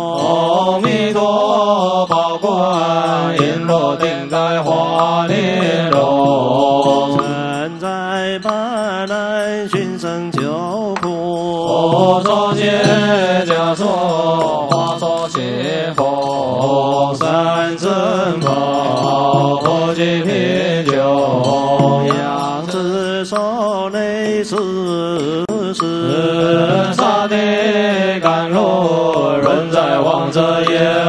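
Chinese Buddhist monks chanting a sung liturgical verse (fanbai) in slow, long-drawn, wavering melody, part of a food-offering rite for the dead.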